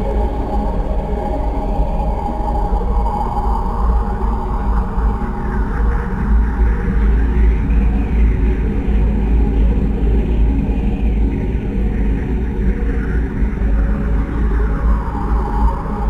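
Experimental noise music: a dense, loud low rumbling drone with a tone that sweeps up and back down in pitch about every three seconds.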